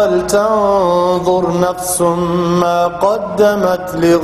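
A man's voice reciting a Quranic verse in Arabic in the melodic, drawn-out style of tajweed recitation, holding long notes that glide between pitches, with short breaks between phrases.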